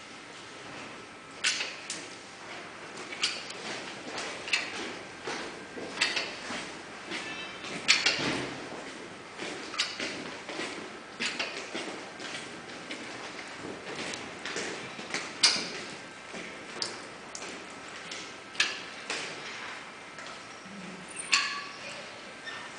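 Scattered sharp clicks and knocks at uneven intervals, a dozen or more, a few of them louder than the rest.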